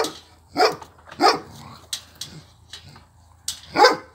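Husky giving four short barking calls: one at the start, two more within the first second and a half, and one near the end, with a few faint clicks in the gap between.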